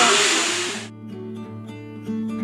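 A loud, steady rushing background noise that cuts off abruptly about a second in. It gives way to quieter background music of plucked guitar notes.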